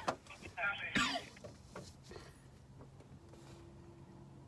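A man's short, muffled laughter, followed by a faint low steady hum.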